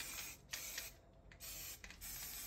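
Aerosol spray paint can hissing faintly in several short bursts, the nozzle cap pressed lightly to give a soft, diffuse spray.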